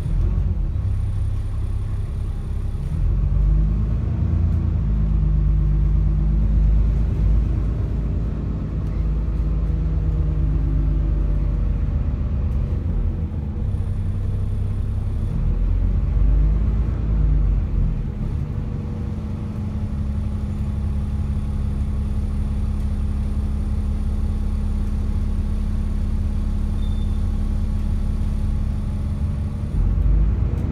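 Diesel engine and drivetrain of an ADL Enviro 400 double-decker bus, heard from inside the passenger saloon. The engine note rises and falls several times over the first eighteen seconds as the bus drives, then settles into a steady low hum.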